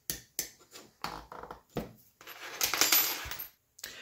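Metal hardware being handled: a hex key clicking in a screw head and small knocks of parts, then, from about two seconds in, a longer metallic scraping clatter with a faint ring as the aluminium-extrusion assembly and tools are picked up off the mat.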